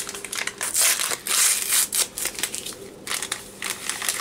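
Plastic inner pouch of Jell-O instant vanilla pudding mix crinkling as it is handled and emptied into a bowl of dry cake mix, in an irregular run of crackles.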